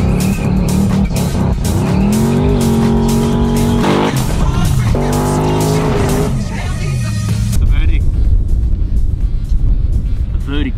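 High-performance car engine revving hard through a smoky burnout, heard from inside the cabin, its pitch climbing, holding and falling over a wash of tyre noise. About three-quarters of the way through the engine sound drops away, leaving a steadier, thinner sound.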